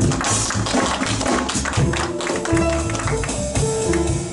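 Live jazz quartet of violin, piano, upright bass and drum kit playing a blues, the drums and bass steady underneath with sustained melody notes above.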